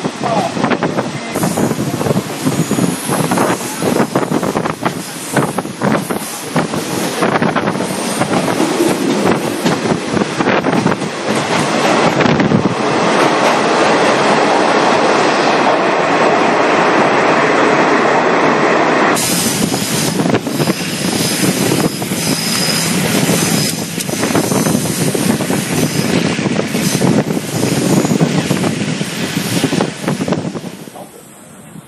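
Passenger train running along the track, heard from an open carriage window: steady wheel-and-rail noise with rapid clattering over the rails. Near the middle it grows into a louder, steadier roar for several seconds as the train runs through a tunnel, then changes back abruptly to the open-air clatter.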